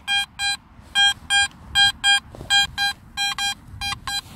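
Garrett AT Max metal detector sounding its target tone: about a dozen short beeps of one steady pitch, mostly in pairs, as the coil is swung back and forth over the spot. The beeps come back the same on every pass, a solid, repeatable signal from a buried metal object.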